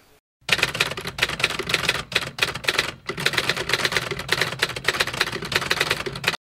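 Typewriter sound effect: rapid, continuous key strikes clattering away, with a short pause about halfway through, as a title card's text types itself out.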